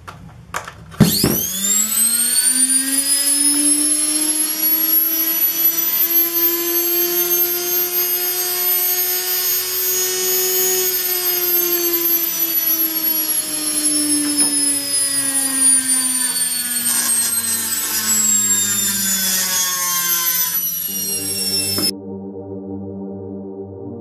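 Washing-machine motor, a brushed universal motor, running bare on the bench from the mains. After a click, its whine climbs quickly in pitch as it spins up to high speed and holds there. In the second half it slowly sinks in pitch.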